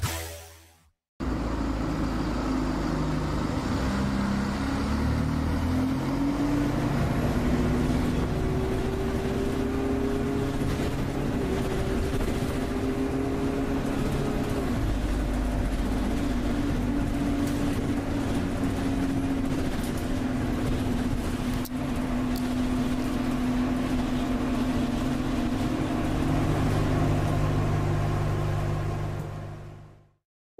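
A car engine running over a steady rush of noise, its pitch climbing for several seconds and then dropping back. It fades out near the end.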